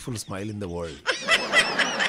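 A person's voice, then snickering laughter starting about a second in.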